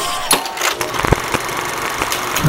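A small motor running steadily, with a few sharp clicks through it.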